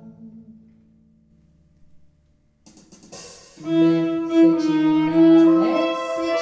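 Bowed string ensemble of violin and double bass: a held low chord dies away to a short pause, then the strings come back in about two and a half seconds in, with a sustained violin melody entering about a second later.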